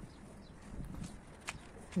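Quiet outdoor background with a few faint knocks and one sharp click about one and a half seconds in.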